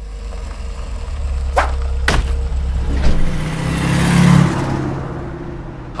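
Cartoon sound effect of a van's engine running with a low rumble, broken by two sharp knocks about a second and a half and two seconds in. The engine noise then swells and fades, as of the van pulling away.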